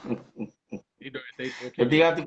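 A man laughing: short breathy bursts tailing off, followed by voiced talk near the end.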